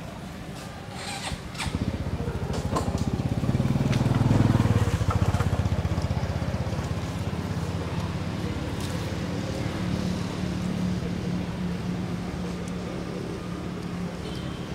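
A small engine running, with a rapid firing rhythm; it grows louder to a peak about four seconds in, then runs on steadily.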